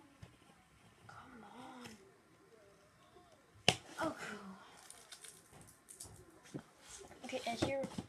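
Cardboard toy box being handled and turned on a wooden floor, with one sharp knock a little under four seconds in and a run of clicks and rustles near the end. A quiet voice murmurs in between.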